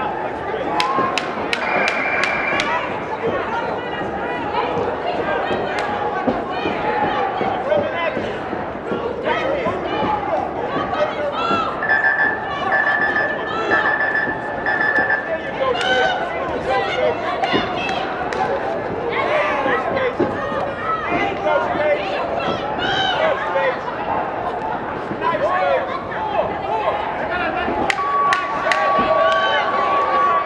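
Many overlapping voices of spectators and cornermen talking and calling out around a boxing ring, with a few sharp clicks early on.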